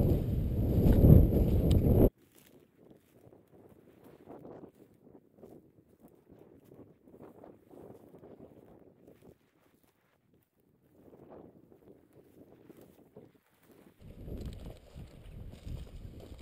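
Wind buffeting the microphone over the rustle of footsteps through dry grass and brush. About two seconds in it cuts off abruptly to faint, scattered rustling, and the louder wind noise comes back near the end.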